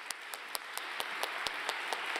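Audience applauding: a few sharp single claps stand out over a wash of clapping that builds through the moment.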